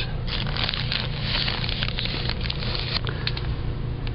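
Plastic bags crinkling and rustling with many small scattered clicks, as bagged toys brush against the camera, over a steady low hum.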